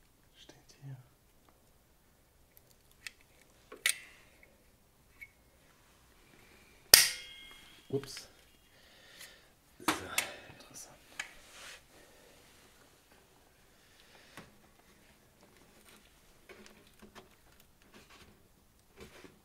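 Scattered clicks, taps and rustles of hands and tools working a plastic wheel-arch flare back onto a car's front wheel arch with glue. The sharpest crackle comes about seven seconds in, with another cluster about ten seconds in.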